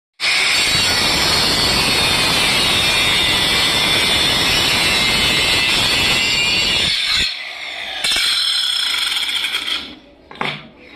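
Handheld electric marble cutter grinding through a red marble strip: a loud, steady, harsh whine. About seven seconds in the sound drops for about a second, then the cut resumes and stops just before the end.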